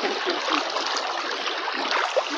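Floodwater sloshing and splashing around people wading through a flooded road, a steady rush of water with small irregular splashes.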